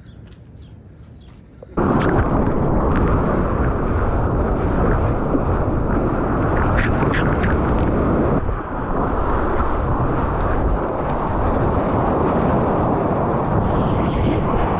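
Rushing and splashing seawater from surf whitewater against a camera at the waterline. It starts suddenly about two seconds in and stays loud and dense, muffled with little treble, easing briefly past the middle.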